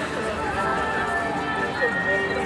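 Several people's voices talking and calling out at once, overlapping, with no clear words.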